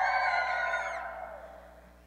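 A crowd of children shouting and cheering together in answer to a call for noise. Many high voices overlap, then the shout fades away over the last second.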